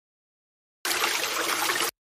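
Sound effect of rushing water, about one second long, cutting in suddenly about a second in and stopping abruptly.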